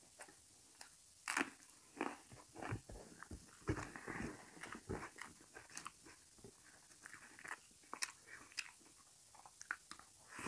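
Eating sounds: irregular chewing and crunching of rice and curry. Fingers mixing food on a steel plate make short scattered clicks throughout.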